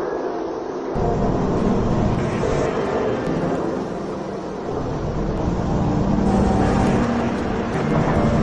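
Dense, distorted ambient noise drone from an experimental soundscape composition: a heavy low rumble under a wash of hiss with faint held tones. The rumble steps up about a second in and swells again near the end.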